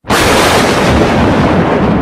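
Thunderclap sound effect: a very loud roar of thunder that starts suddenly and rumbles on steadily.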